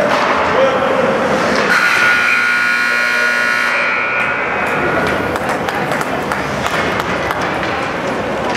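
An ice rink's horn sounds one steady blast of about two seconds, over the noise of the crowd, signalling the end of the game.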